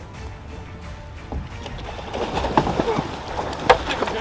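Bluefin tuna thrashing at the surface alongside the boat, with irregular splashing that picks up over the second half and one sharp slap near the end. Background music plays underneath.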